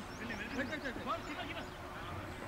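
Indistinct, distant voices of cricket players and onlookers calling out across the ground, in short broken phrases.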